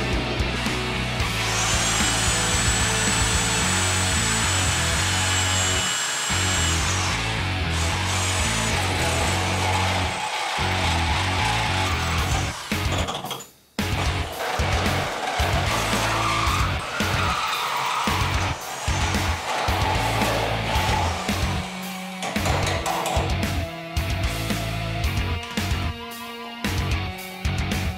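A handheld power tool spins up about two seconds in, runs with a steady high whine for about five seconds, winds down, then runs again briefly. Rock music with electric guitar plays throughout.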